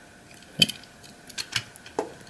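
A few sharp little clicks and taps of a die-cast Matchbox fire truck being handled: a loud one about half a second in, then several quicker, lighter ones near the end.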